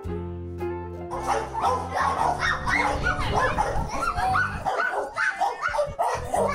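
A dog barking in a quick run of short barks starting about a second in, over background music.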